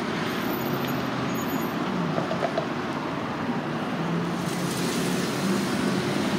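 Steady street traffic noise from cars on the road, with a low engine note coming in about four and a half seconds in.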